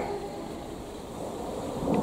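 Breeze blowing across the microphone outdoors: a steady, even rush of wind noise.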